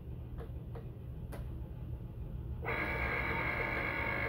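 A few light clicks as the electronic cutting machine's button is pressed and the mat is handled, then, about two-thirds of the way in, the machine's motors start with a steady, high-pitched whir as the cutting mat is fed in.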